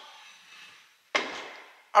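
A single sharp knock about a second in, which fades out over most of a second.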